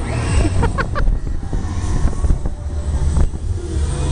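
Wind rushing over the microphone of a fast-spinning KMG X-Drive fairground thrill ride, a heavy rumble with the ride's music underneath.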